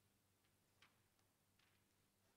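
Near silence: room tone with a faint steady electrical hum and a few faint short clicks, the clearest just before one second in.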